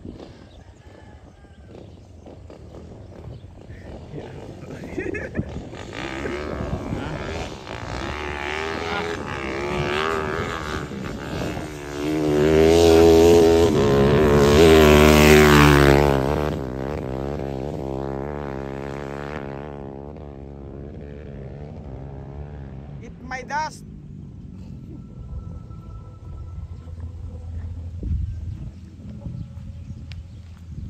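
A freshly built four-valve Honda XRM 125 single-cylinder motorcycle on its break-in ride. It approaches under throttle, grows loud as it passes close by between about 12 and 16 seconds in, its pitch dropping as it goes past, then fades as it rides away.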